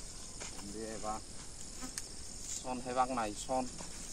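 Steady high-pitched drone of insects in the grass, with a voice calling out briefly twice.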